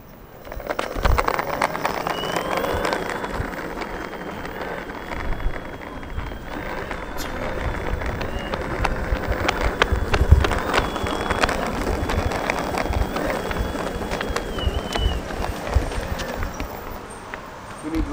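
Boosted electric skateboard rolling over rough parking-lot asphalt: a continuous wheel rumble with scattered clicks and knocks, and a faint, steady high whine from its electric drive.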